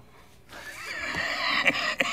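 A man's long, high laugh from the film's soundtrack, starting about half a second in and growing louder.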